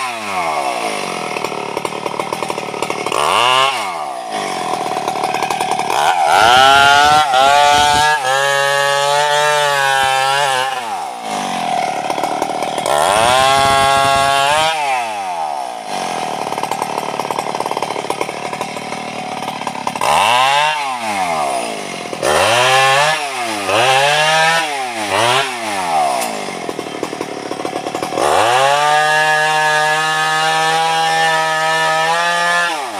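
Stihl two-stroke chainsaw revving up and down between idle and full throttle while cutting through teak branches. There are several long full-throttle runs, a burst of short quick revs about two-thirds through, and a rise back to full revs near the end.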